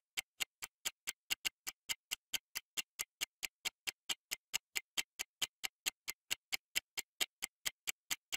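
Countdown-timer ticking sound effect: quick, evenly spaced clock-like ticks, about four to five a second, counting down the answer time on a quiz question.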